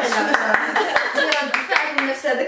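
A few quick, irregular hand claps over women's lively talk.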